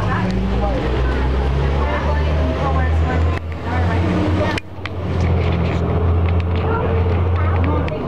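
Neoplan AN440 city bus engine running steadily at cruising speed, a deep steady drone, heard inside the passenger cabin with voices over it. The sound drops out for an instant a little past halfway.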